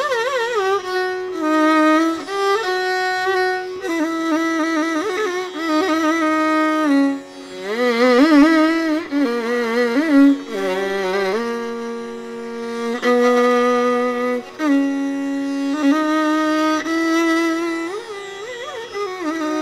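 Carnatic classical music: a single melodic line with sliding, shaken ornaments (gamakas) between long held notes, with no drum strokes.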